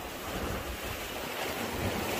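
Small waves washing in shallow sea water, with wind rumbling on the microphone.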